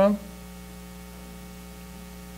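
Steady electrical mains hum in the recording, a low, unchanging tone with a faint buzz above it.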